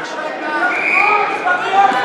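Voices of spectators and coaches talking and calling out in a gymnasium, with a reverberant hall sound and a brief high-pitched tone near the middle.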